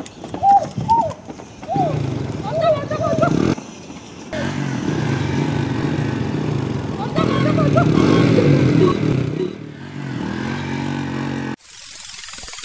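A small motorcycle engine running close by, with people's voices calling out over it. The sound cuts off abruptly shortly before the end.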